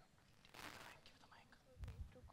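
Near silence with faint, murmured voices away from the microphones, and a soft low thump near the end.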